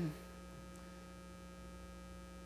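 Steady electrical mains hum, a low even drone with a few faint higher tones, heard in a pause between spoken phrases.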